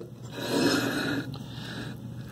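A glazed ceramic tile being slid across a wooden tabletop into place, a soft scraping rush that swells for about a second, then a fainter one near the end.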